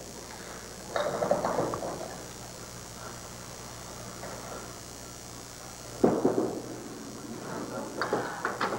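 Candlepin bowling alley with a steady low hum. About six seconds in comes a sudden loud thud as the small ball is delivered onto the wooden lane, and it keeps rumbling as it rolls toward the pins.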